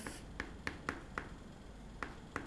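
Chalk writing on a chalkboard: a handful of short, sharp chalk strokes and taps in the first half.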